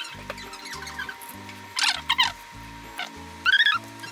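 Light, playful background music made of short plucked-sounding bass notes. Squeaky cartoon-style sound effects chirp about two seconds in and again near the end.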